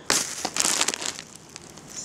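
Clear plastic bag crinkling as it is handled, loudest in the first second, then fainter rustling.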